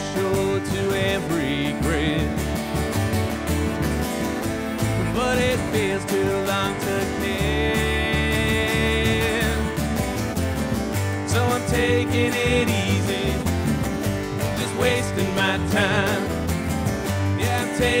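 A live bluegrass trio plays an instrumental break with no singing: acoustic guitar strumming over a walking upright bass, and a resonator guitar taking the lead with sliding, wavering notes.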